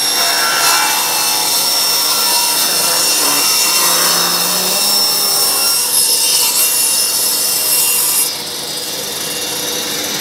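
Table saw ripping a narrow strip off a hardwood board fed along the fence with a push stick, with steady blade-cutting noise. About eight seconds in the cut ends and the sound drops to the saw and dust extractor running free.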